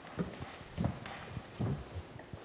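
Three soft knocks, evenly spaced about two-thirds of a second apart, against a quiet room background.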